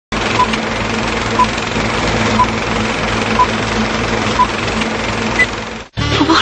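Film countdown leader sound effect: a steady, loud whirring and clattering of a film projector with crackle, and a short beep once a second, five times. A single higher beep comes near the end, just before the sound cuts off.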